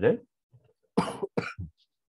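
A person coughing twice, about a second in, the two short coughs about half a second apart, just after a stretch of speech ends.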